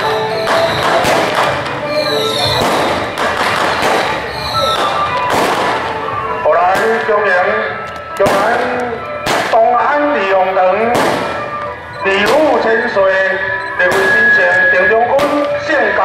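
Procession music: percussion struck about once a second, each stroke ringing on, with a wavering melody line joining about six seconds in.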